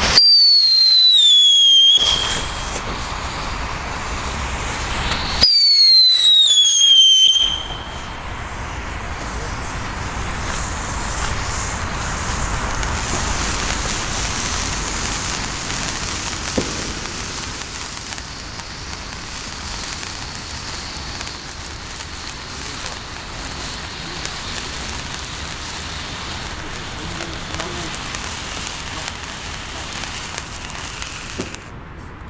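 A toy-truck-shaped fountain firework burning. It gives two loud whistles, each falling in pitch over about two seconds: one at ignition and one about five seconds in. After that comes a steady hissing spray of sparks that carries on to the end.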